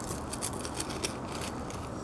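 Dry, crackly rustling with many small irregular clicks as loose dried fruit tea is handled and added to the plate.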